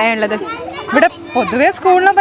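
Speech mixed with schoolchildren's voices.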